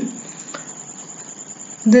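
A pause in speech: faint steady background hiss with a thin, steady high-pitched tone running through it, and one soft click about half a second in.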